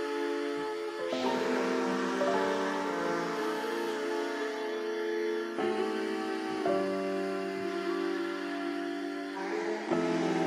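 Slow, soft background music: held chords that change every second or two.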